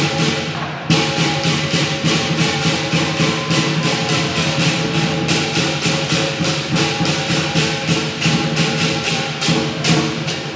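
Chinese lion dance percussion: a big drum with clashing cymbals playing a fast, steady beat of about three to four strokes a second over a ringing tone. A loud crash comes about a second in.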